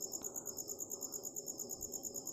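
A cricket chirping faintly in the background, a fast, even, high-pitched pulsing, over low room noise.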